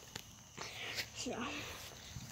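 A couple of sharp clicks and faint rattling as a handheld phone is jostled while moving over bumpy ground, with one short spoken word.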